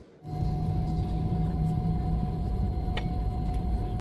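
Steady low rumble of an airliner cabin while the plane is parked, with a faint steady hum running through it and a light click about three seconds in.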